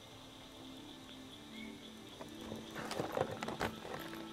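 Irregular clicks and knocks of handling in a small boat while a largemouth bass is unhooked from a crankbait, starting about halfway through and busiest near the end.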